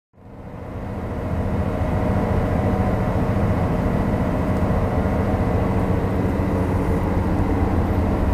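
Steady low rumble and drone of a ferry's engines heard on board, with a few faint steady machine tones. It fades in over the first second or so.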